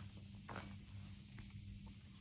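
A steady, high-pitched chorus of insects in the background, with a faint low hum beneath it and a few soft footsteps.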